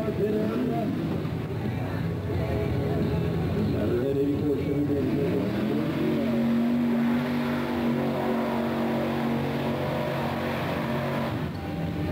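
Pickup truck engine revving hard at a mud drag: the pitch climbs about five seconds in and is held high and steady for several seconds, then drops away near the end.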